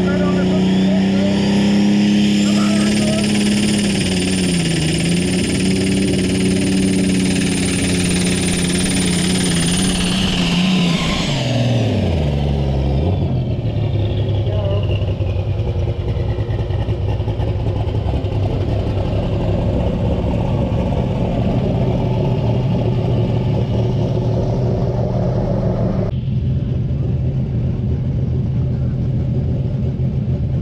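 A turbocharged pulling tractor's engine at full revs under load, with a high turbo whine climbing in the first few seconds and then held. About eleven seconds in the engine comes off the throttle: its pitch drops and the whine winds down. It then runs steadily at lower revs for the rest of the time.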